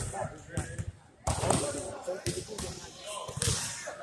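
Basketballs bouncing on a hardwood gym floor, several separate thuds, with people's voices in the background.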